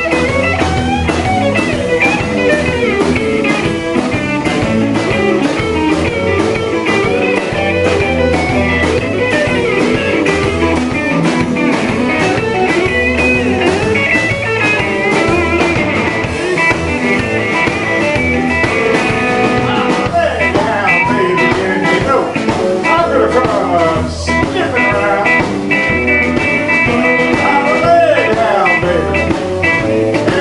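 Live blues-rock band playing an instrumental break: electric guitars, bass and drum kit at a steady beat, with a guitar lead bending notes in the second half.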